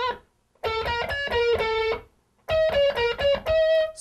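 Amplified electric guitar playing a blues scale sequence in groups of five alternate-picked notes, in three quick runs with brief pauses between them, moving up a position each time.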